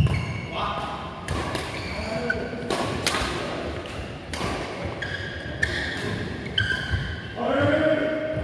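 Badminton rally: rackets striking a shuttlecock in sharp cracks roughly a second apart, echoing in a large hall.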